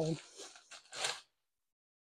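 Soft rustling as clothing is handled, with a short, louder rustle about a second in; the sound then cuts off abruptly into dead silence.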